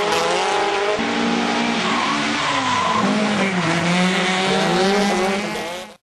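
Drift cars sliding with tyres squealing and engines revving up and down through the slide. The sound fades out just before the end.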